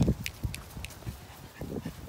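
Dogs play-fighting, making short low growls and grunts. The loudest comes right at the start, with a few more near the end.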